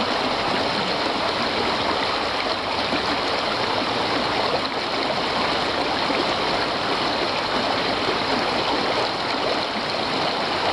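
Fast, shallow stream rushing and splashing over stones close to the microphone, a steady, unbroken noise.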